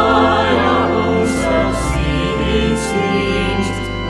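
A small group of mixed voices singing a hymn in parts, accompanied by a church organ holding steady low bass notes beneath them.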